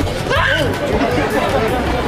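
Passersby's voices chattering on a busy pedestrian street, with one voice briefly rising and falling in pitch about half a second in.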